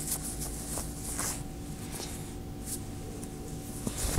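Soft rustling of a stretchy fabric head wrap being pulled up and adjusted over the face, a few short brushes of cloth over a faint steady hum.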